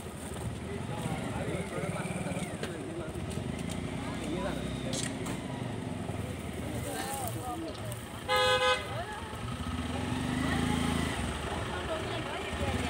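A vehicle horn toots once, briefly, a little past the middle, the loudest sound here. Under it run a low engine hum and people talking.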